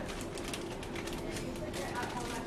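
Plastic specimen bag crinkling and rustling as gloved hands handle it, in a run of short quick rustles, with faint indistinct voices underneath.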